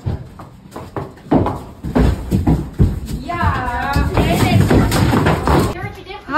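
Irregular knocks and thuds from a horse being loaded into a horse trailer, with people's voices over them.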